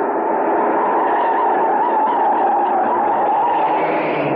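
A car driving fast, its engine and road noise steady and loud.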